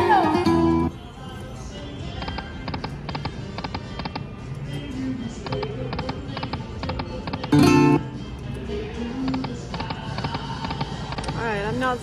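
Chica Bonita slot machine's game audio: Spanish-guitar-style music with regular clicking as the reels spin. A loud short jingle cuts off about a second in, and another sounds briefly near eight seconds.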